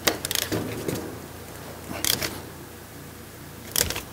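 Metal clicks and rattles of a stud puller and socket being worked onto a broken exhaust manifold stud: a cluster of clicks at the start, another about two seconds in, and one near the end.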